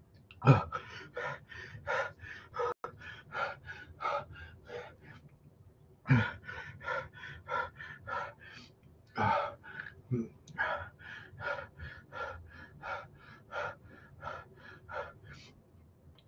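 A man breathing hard through his mouth in quick, short huffs, about three a second, with a few louder grunting gasps. These are the pained breaths of the afterburn from an extreme hot sauce.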